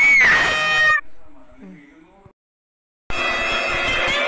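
Edited soundtrack: a loud, high-pitched sound clip cuts off about a second in, and a faint tail fades out into a short silence. Music with guitar starts about three seconds in.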